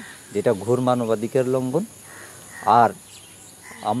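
A man speaking in short phrases with pauses between them, over a faint steady high-pitched background hiss.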